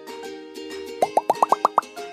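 Background music with a quick run of seven short rising 'bloop' sound effects about a second in, each one pitched a little higher than the last.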